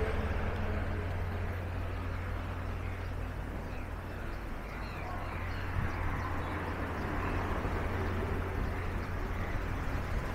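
Steady road-traffic noise from vehicles passing on a wide city road, with a low rumble throughout. A few faint bird chirps sound in the middle.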